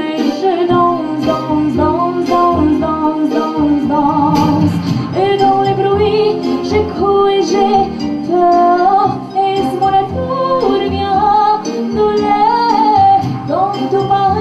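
A young woman singing a French song into a handheld microphone over an instrumental backing with a steady beat, her voice held in long, wavering notes.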